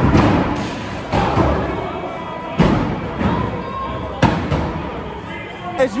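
Thrown axes hitting wooden plank targets: four sharp thuds over about four seconds, each with a short ringing tail, over background chatter.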